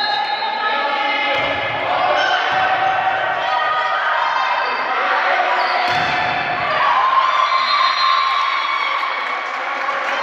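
A volleyball being struck during a rally, heard as a few dull thumps, over continuous shouting and calling from players and spectators.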